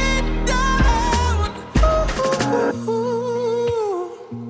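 Pop song: a male voice sings a held, gliding vocal line over a backing of deep bass and drums. About three seconds in the bass drops away, leaving a long sung note that slides down in pitch near the end.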